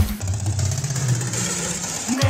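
A gap in the dance beat filled by a low, engine-like drone that slowly rises in pitch, with a hiss over it that cuts off near the end: a transition effect in a dance megamix.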